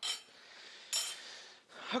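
Metal serving utensil clinking and scraping against a ceramic plate while vegetables are spooned on, twice: once at the start and again about a second in.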